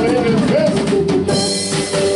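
Live rock band playing: drum kit with snare and bass-drum hits over bass, guitar and keyboards, with a saxophone holding long notes.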